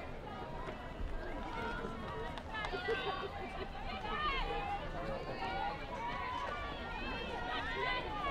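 Many people's voices chattering and calling out over one another, mostly high-pitched, growing busier a few seconds in, over a steady low rumble.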